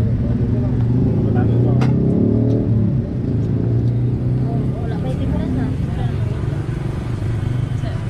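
A motor vehicle's engine running close by, its pitch rising for a moment about two seconds in, over background voices.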